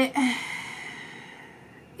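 A woman's long sigh: a short voiced start, then an exhale that fades away over about a second and a half.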